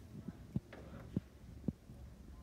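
Scissors snipping the serger thread chain that links a string of sewn fabric bags, three short crisp snips about half a second apart.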